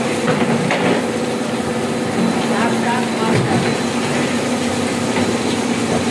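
Carton gluing and pasting machine running with a steady mechanical hum and rattle.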